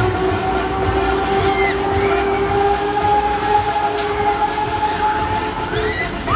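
A long steady drone with an overtone, slowly rising in pitch and fading out near the end, over funfair music with scattered shouts.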